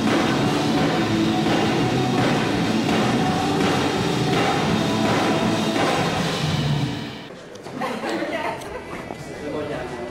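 Loud rock music with guitars and drums, cutting off about seven seconds in; quieter voices and background noise follow.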